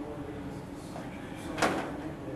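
A single short, sharp knock about one and a half seconds in, over a faint steady room hum and murmur.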